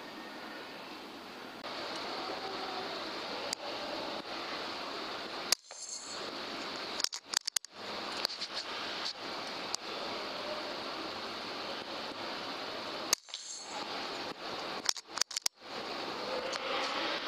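Steady hiss of faint background noise picked up by a night-vision scope's recording, broken by several sharp, short clicks and brief drop-outs to silence.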